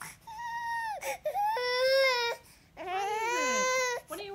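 Baby crying in three wails, the middle one the loudest and the last rising then falling in pitch.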